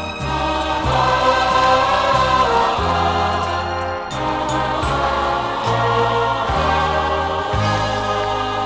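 A choir and orchestra perform a Christmas carol arrangement. The choir sings sustained chords over a bass line of held notes, with a few light percussion strokes.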